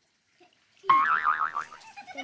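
A cartoon boing sound effect: a sudden springy twang whose pitch wobbles rapidly up and down, starting about a second in and dying away within half a second.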